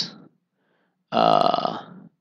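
A man's short, rough vocal sound from the throat, starting about a second in and lasting just under a second, low and gravelly like a burp or a creaky drawn-out "uhh".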